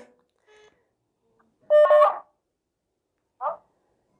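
A short electronic beep of two steady tones, like a phone keypad tone, about two seconds in, mixed with a brief fragment of a voice. A short vocal sound follows near the end, and between these sounds the line cuts to silence.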